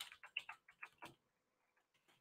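Near silence, with a handful of faint, short clicks in the first second or so.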